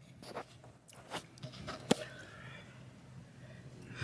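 A few scattered clicks and knocks, the sharpest one near the middle, from a phone being handled and moved, over a faint low room hum.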